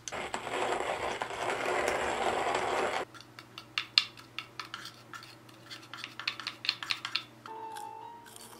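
Whole coffee beans poured from a wooden spoon into the metal hopper of a wooden hand coffee mill: a dense rattling for about three seconds, followed by scattered light clicks and taps.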